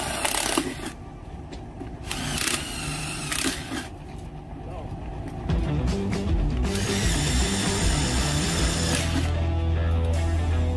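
Cordless drill running in several short bursts, its motor whine rising as it spins up, then a longer steady run near the end, as the bit works into a black plastic catch basin. Background music plays under it.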